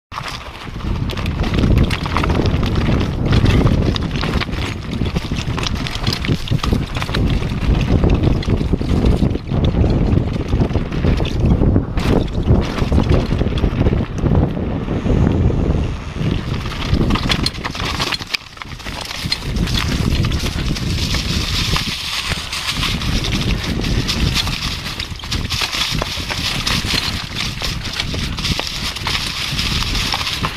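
Downhill mountain bike at speed: a steady rattle and crunch of tyres and frame over gravel and rock, with wind rushing over the microphone. Briefly quieter about eighteen seconds in, then rougher and hissier again.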